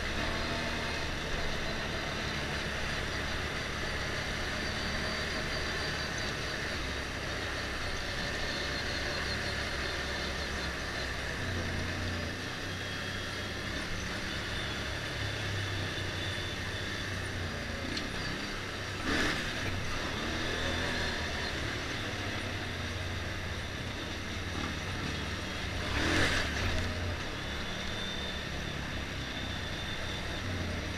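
Motorcycle engine running at cruising speed under steady wind and road noise, its low drone shifting slightly as the throttle changes. Two brief louder bursts of noise stand out, about two-thirds of the way in and again a few seconds later.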